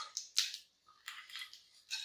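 Mustard seeds spluttering in hot oil in a pan, irregular sharp pops and crackles a few times a second.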